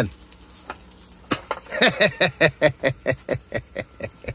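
A single click about a second in, then a person laughing in quick, even pulses, about seven a second.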